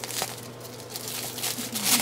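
A clear plastic bag crinkling as it is handled, in faint irregular rustles with a louder one near the end.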